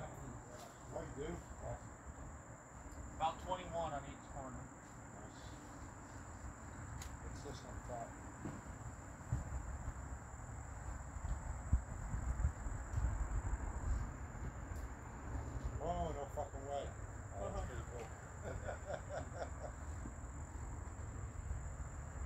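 A steady, high-pitched insect trill that runs on without a break, with faint distant voices now and then and a low rumble that swells in the middle.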